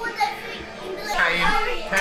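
Indistinct children's voices talking over one another, quieter at first and growing louder and higher-pitched in the second half.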